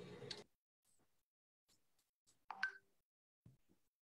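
Near silence on a video call: faint room noise cuts off about half a second in, leaving a few faint ticks and one short, faint sound about two and a half seconds in.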